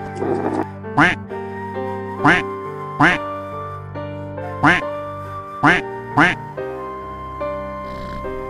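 A domestic duck quacking six times in short, single quacks, the last two close together, over background music with held notes.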